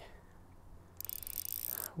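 Spinning reel under load from a hooked perch, giving a fine, high mechanical ratcheting buzz that starts about a second in.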